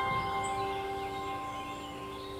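Soft piano music in a pause between phrases: the last struck notes ring out and slowly fade, with no new notes. A faint high bird chirp comes near the start.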